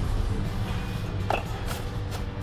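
Shop ambience: faint background music over a steady low hum, with two light clicks about halfway through.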